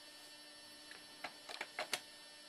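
Faint steady electrical hum, with a few small clicks in the second half.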